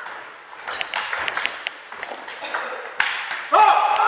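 Table tennis rally: a celluloid ball clicking quickly back and forth off the bats and table. A last sharp click comes about three seconds in, then a loud shout with a rising pitch.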